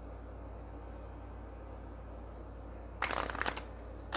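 A deck of oracle cards shuffled by hand: a short, loud riffling rustle about three seconds in, over a steady low room hum.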